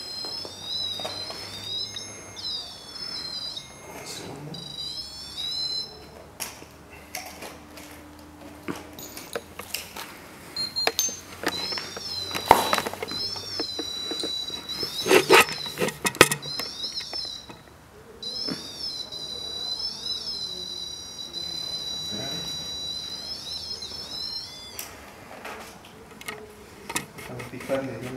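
A small battery-powered ghost-hunting gadget on a concrete floor sends out repeated warbling electronic chirps that rise and fall in pitch, set off by being touched. The chirps stop for a few seconds partway through, while a few sharp knocks from the device being handled come before they start again.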